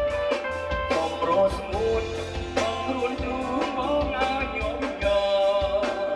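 A band playing a song, with a singer over guitar and drums.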